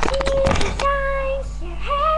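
A girl's voice singing, holding the same note twice, then gliding upward near the end. At the start there are knocks and rustling as the webcam is handled.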